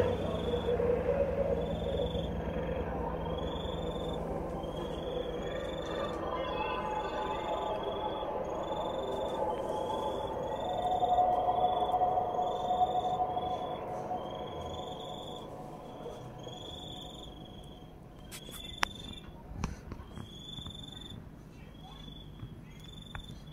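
Bell 412EP helicopter's rotor and engine noise fading away as it flies off, under an insect chirping in a steady rhythm of about one and a half chirps a second. A few sharp clicks come near the end.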